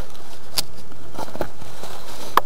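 Footsteps in dry leaves and handling of a handheld camera: a few light crackles and clicks over a steady background hiss.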